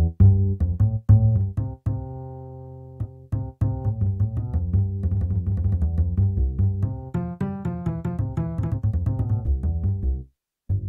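Sampled double bass from the BeatHawk app's Balkans pack, played from a MIDI keyboard and heard direct with the microphone closed. It plays low notes with sharp starts: a few separate notes, one held and fading about two seconds in, then a quicker, busier run of notes through the second half.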